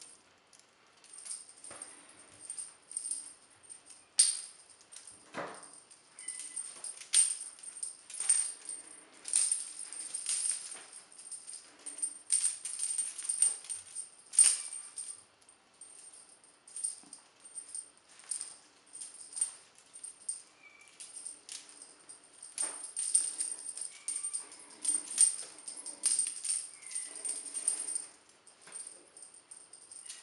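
Feather wand cat toy being waved and shaken in short, irregular bursts of high-pitched jingling.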